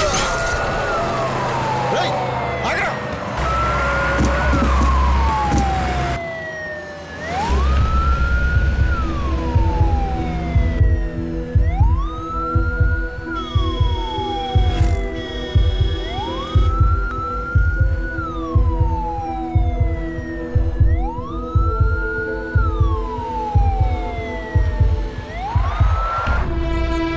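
Ambulance siren wailing: each cycle rises quickly and falls slowly, repeating every few seconds. It plays over film background music with a steady low beat.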